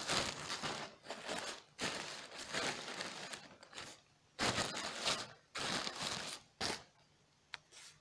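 Plastic postal mailer bag crinkling in several rustling stretches as the parcel is handled and turned over, followed by a couple of faint clicks near the end.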